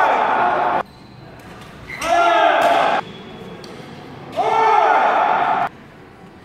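Indoor badminton doubles play in an echoing hall: three loud bursts of shouting voices, one near the start, one about two seconds in and one at about four and a half seconds, over shuttlecock hits and shoe sounds on the court.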